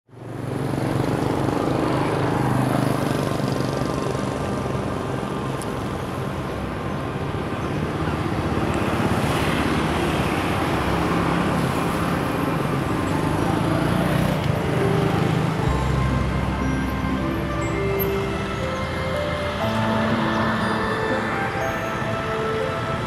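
Street traffic noise of cars and motorbikes passing, with music playing along with it.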